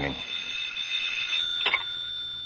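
Telephone ringing, a steady high ringing tone with a brief click near the end.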